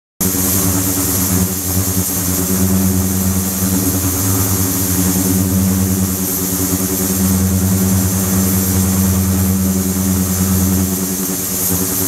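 Ultrasonic cleaning tank running with its water circulation: a steady electrical-mechanical hum with an even high hiss.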